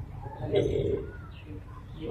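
Faint voices and a bird calling over a low outdoor rumble.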